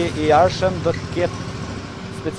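A man speaking Albanian into reporters' microphones, over a steady hum of outdoor street noise.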